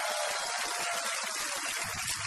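A steady, loud rushing hiss, like gushing water, with no clear pitch.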